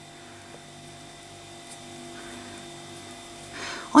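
Steady low electrical hum with several even tones over faint room noise.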